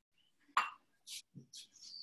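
A few light clinks and scrapes of kitchenware, heard over a compressed video-call line, with a short high chirp near the end.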